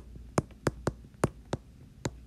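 Stylus tip tapping on a tablet's glass screen during handwriting: about six sharp, irregularly spaced clicks.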